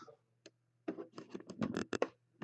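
Faint clicks and scrapes of a computer mouse being handled on a desk: one click about half a second in, then a quick run of about eight in the last second, over a low steady hum.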